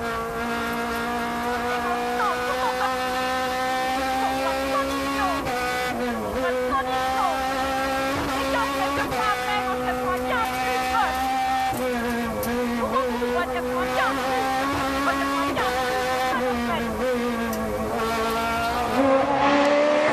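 Rally-prepared Renault Clio engine heard from inside the cockpit, held at high revs under hard acceleration, with its pitch dipping briefly and climbing again several times at gear changes.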